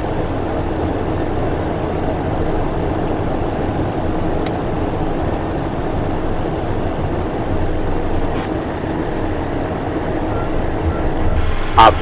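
Steady cockpit noise of a Cessna Citation Encore business jet through the landing flare, touchdown and rollout: its twin turbofan engines and the airflow, with a constant low hum.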